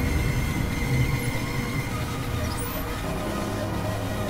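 Experimental synthesizer drone: a rumbling, churning low layer under a held high tone that fades after about two seconds, with a steadier middle tone and faint whistling sweeps up high. It eases slightly in level after about two seconds.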